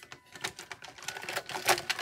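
Plastic highlighter pens clicking and clattering against one another as they are sorted through, a quick irregular run of small clicks, the loudest a little before the end.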